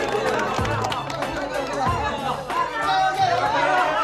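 Background music under a small group's excited chatter and cheering, with some hand clapping.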